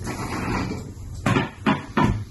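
A cheese board slid across a polished wooden desktop, a scraping rub for about a second, then three sharp knocks as it is set down.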